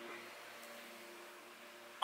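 Quiet room tone: a faint steady hiss with a low, even hum.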